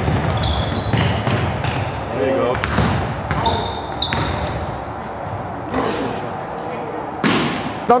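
Basketball bouncing on a hardwood gym floor with short high sneaker squeaks from players moving, all with the echo of a large gymnasium. Near the end there is a brief loud rush of noise.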